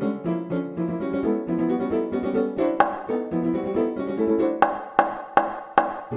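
Piano music for a silent film, playing a quick passage of short repeated notes. Sharp accented strikes come once about three seconds in and then four times near the end, about half a second apart.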